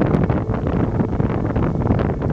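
Rough, rushing rumble of an ash explosion venting from a volcanic crater, dense with crackling, with wind buffeting the microphone.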